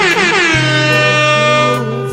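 A DJ air-horn sound effect over a music mix: one long blast that starts high, drops in pitch, then holds, while a deep bass note comes in about half a second in.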